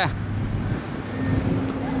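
Steady hum of an engine running, with a second, higher steady tone joining about halfway through.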